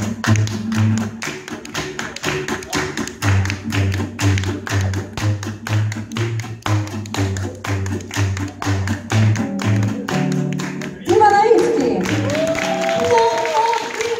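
Live gypsy-jazz band: acoustic guitars chopping a steady swing rhythm over a walking double bass. About eleven seconds in, the rhythm breaks and a woman's voice comes in over the band.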